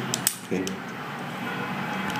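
A few light metallic clicks near the start as a steel dial caliper's jaws are handled and closed around a stainless steel drip tip, followed by a steady faint hiss.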